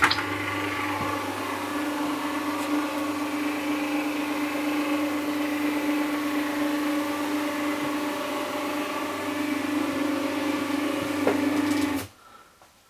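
Motorised roller blind lowering at the touch of a wall panel button: its electric motor gives a steady mechanical hum with a low drone and a stronger buzzing tone above it.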